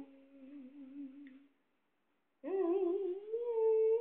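A woman humming a tune in long held notes; the humming fades within the first second and a half, cuts to dead silence for under a second, then comes back louder about two and a half seconds in.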